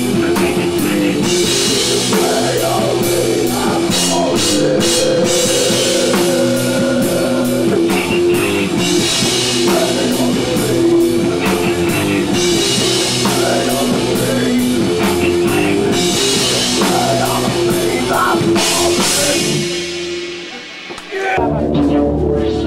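Live rock band playing: drum kit with regular cymbal strokes, bass and guitar, with keyboards. The music dies down about twenty seconds in, then sound picks up again just before the end.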